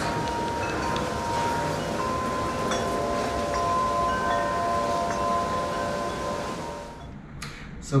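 Wind chimes ringing in the breeze: a few long, clear tones sounding at different moments and overlapping, over a steady hiss of wind. The chimes and the hiss cut off shortly before the end.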